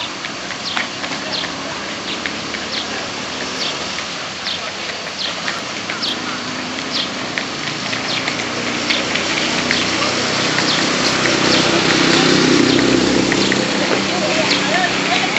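A large crowd walking together outdoors: scattered footsteps and shuffling over a steady hiss. Murmuring voices build and get louder over the last few seconds.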